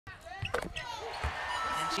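Basketball bouncing on a hardwood arena court after a free throw: a few dull thuds, over the murmur of the arena.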